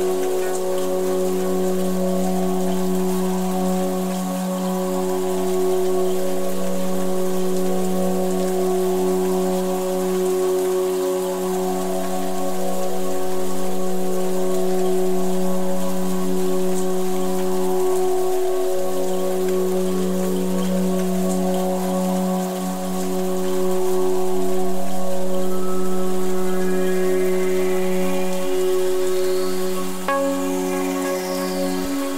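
Ambient music of long, held synth-pad chords layered over a steady hiss of rainfall. Higher, brighter notes climb in near the end.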